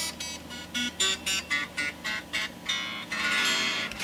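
Strings of a 12-string electric guitar (Chinese Rickenbacker 360 copy) plucked one after another in a quick run of bright, ringing notes, then strummed for nearly the last second. It is played to try out the string action just after it has been lowered.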